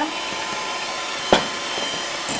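Electric hand mixer running steadily, its beaters creaming butter and sugar in a glass bowl. A single sharp click about a second and a third in.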